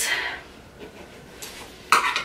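Small objects being handled: a few faint clicks, then one sharp click or clink just before the end.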